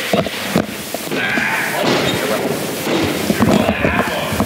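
Room noise from a small live wrestling crowd, broken by several short thuds and slaps as the wrestlers grapple and shift on the ring mat.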